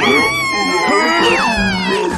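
A cartoon character's high-pitched wailing cry, held for about a second and a half and then dropping away sharply, over background music.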